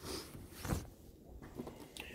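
Soft handling noise as a phone is moved over a fabric bedspread and the camera is shifted, with one brief louder rustle a little under a second in.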